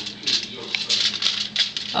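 A knife cutting through the crisp, flaky crust of a baked pastry roll on a foil-lined baking tray: a run of irregular small crackles and crunches.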